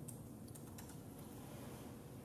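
Laptop keyboard being typed on: a quick run of faint key clicks in the first second, then a few more, over a steady low room hum.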